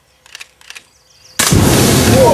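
An aerosol can hit by an air rifle pellet bursting and igniting into a fireball among lit firelighters: a sudden loud blast about one and a half seconds in, carrying straight on as the escaping gas burns.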